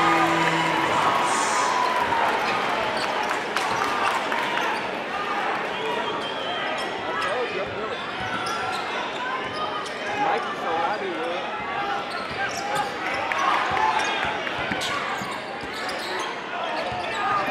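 Live game sound in a basketball gym: a basketball dribbling on the hardwood court over steady crowd chatter.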